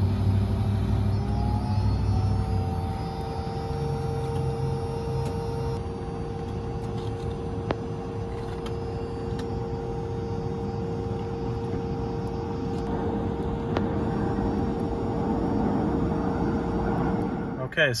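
DC fast charger running as a charging session starts: a steady electrical whine that rises a little in pitch in the first few seconds as the charge ramps up, then holds, over a low steady rumble. It cuts off suddenly near the end.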